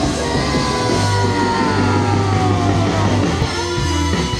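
Rock band playing, with a steady bass line and a long note sliding down in pitch over about two and a half seconds.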